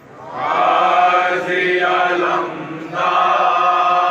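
Men's voices chanting a noha, a Shia mourning lament, together and unaccompanied. One phrase runs, there is a short break, and the next phrase begins about three seconds in.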